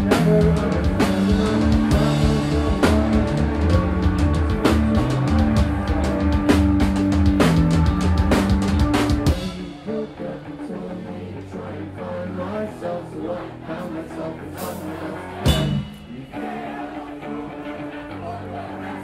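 Live rock band playing an instrumental passage on electric guitars, bass and drum kit, loud and driving with dense cymbal hits. About nine seconds in it drops suddenly to a quieter passage of guitar and bass without the cymbals, broken by a single loud hit a few seconds before the end.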